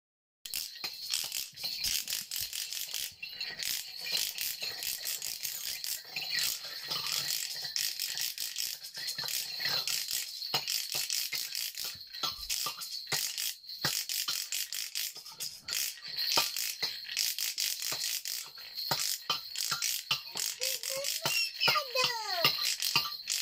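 Toy percussion instruments played together: a continuous, fast rattling and clicking, with a few short falling squeaks near the end.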